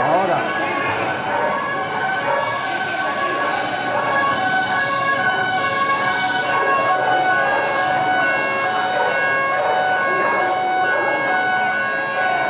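Emergency vehicle sirens sounding in the street, several steady tones at different pitches overlapping and changing over a noisy street background.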